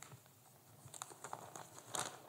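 Faint, scattered taps and clicks of a person walking across a wooden stage and handling a sheet of notes, the sharpest click near the end.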